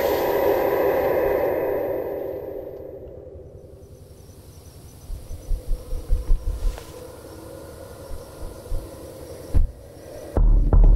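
Horror film soundtrack: a swelling low drone that fades away over the first few seconds, then a run of soft low thumps around the middle and one more thump near the end.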